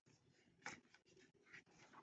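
Faint rustling of paper worksheet pages handled and slid by hand, with a few brief scrapes in near silence.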